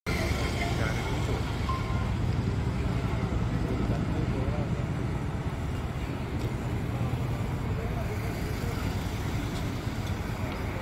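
Steady low rumble of road traffic, with indistinct voices of people talking nearby.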